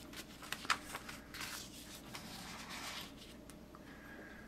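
Faint rustling of paper sheets being lifted and shifted in a cardboard kit box, with a couple of small clicks in the first second.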